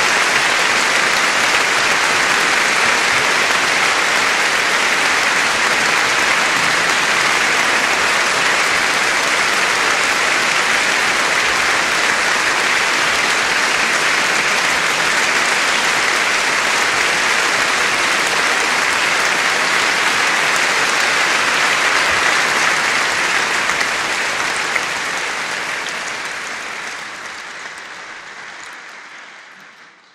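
Large concert-hall audience applauding, steady and full for most of the time, then dying away over the last several seconds.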